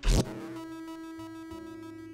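A punchy kick drum hit layered with an electronic beep sound effect. The beep holds as one steady, buzzy tone and slowly fades, and a low 808 bass note comes in about a second in.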